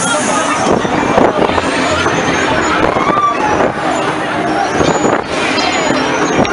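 Future Dance fairground ride in full spin: steady rushing air noise, with riders' voices and shrieks over it.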